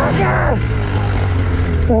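Ski-Doo Summit 850 two-stroke snowmobile engine working in deep powder. Its revs drop about half a second in, and it then runs on at a steady low pitch that sinks slowly.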